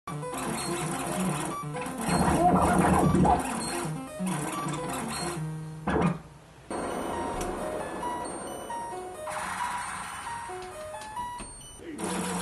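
Electronic synthesizer music made of short, steady notes stepping from pitch to pitch, like a sequenced pattern, with a brief drop-out about six seconds in.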